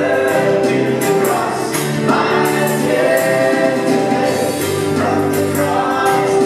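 A live church praise band playing a worship song: a woman sings lead into a microphone over acoustic and electric guitars, bass, keyboards and drums.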